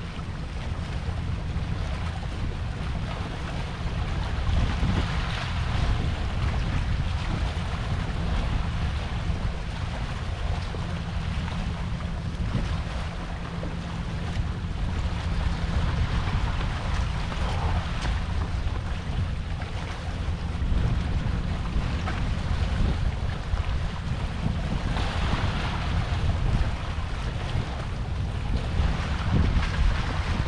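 Wind buffeting the microphone as a steady low rumble, over the hiss of sea water washing against a rock breakwater, which swells now and then.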